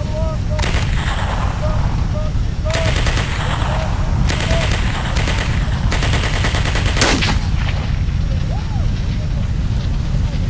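Long, rapid bursts of machine-gun fire, one after another for about seven seconds, ending with a sharp crack, over a constant low battle rumble. Recorded from actual World War II weapons.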